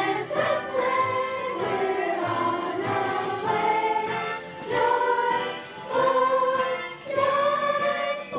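Children's glee club singing together as a group, moving through a melody in long held notes.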